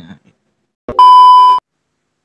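A single loud electronic bleep at one steady pitch, lasting about half a second, starting and stopping abruptly about a second in.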